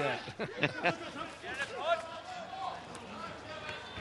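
Speech only: a man's voice trailing off at the start, then fainter voices over the low background noise of the ground.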